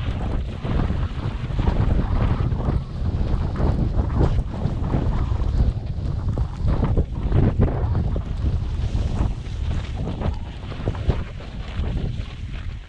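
Wind buffeting a helmet-mounted action camera's microphone during a ski descent, a heavy, uneven rumble, with the irregular hiss and scrape of skis sliding and turning on snow.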